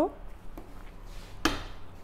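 A single sharp clack about one and a half seconds in from the door of a tabletop dishwasher as it is pulled open and its latch lets go.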